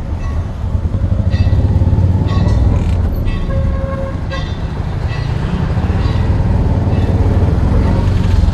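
Auto-rickshaw ride: a small engine rumbles loudly and steadily under the cabin while vehicle horns toot several times in short blasts during the first half.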